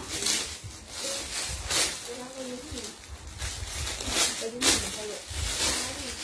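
Clear plastic garment bags crinkling and rustling as packs of wrapped trousers are handled and opened, with several sharper crackles. Faint voices in the background.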